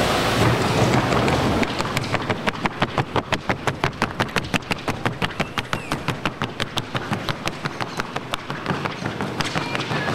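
A paso fino horse's hooves striking a wooden sounding board in quick, even beats, about five or six a second, as it moves in the trocha gait. The hoofbeats start about two seconds in, after a stretch of steady arena noise.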